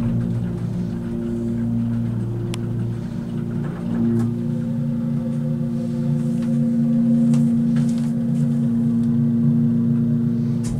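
Pump motor of a 1970s Montgomery hydraulic elevator running as the car travels up, a steady hum of several tones whose pattern shifts about four seconds in. The motor is taken for a later replacement, not an original Montgomery unit.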